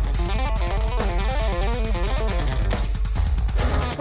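Electric bass playing a fast run of short notes that step up and down, over a drum kit groove.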